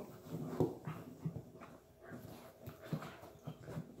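Three-month-old Airedale Terrier puppies play-wrestling, with a run of about ten short puppy vocal noises that stop near the end.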